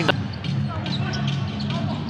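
Live court sound of a basketball game in an indoor arena: one sharp knock at the start, then a basketball bouncing on the court over a steady low hum of hall noise.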